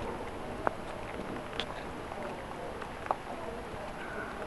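Steady rush of heavy thunderstorm rain, with a few faint ticks scattered through it.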